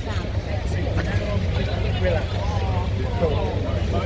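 Steady low rumble of idling double-decker buses and street traffic, with the chatter of a crowd walking past and a laugh about one and a half seconds in.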